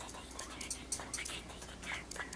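Dog noises for a puppet dog in a children's TV show, played from the show's soundtrack: a run of short, soft breathy puffs.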